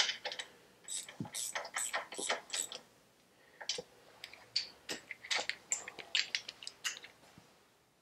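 Socket ratchet clicking as its handle is swung back and forth, tightening the bottom clamp bolt of a Harley-Davidson Shovelhead front fork leg. The clicks come in two runs, with a short pause about three seconds in.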